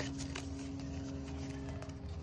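Faint rustling and light clicks of paper banknotes and plastic binder pockets being handled, over a steady low hum.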